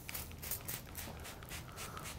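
Hand trigger spray bottle pumped several times onto a stainless steel panel: a quick run of faint, short spritzes.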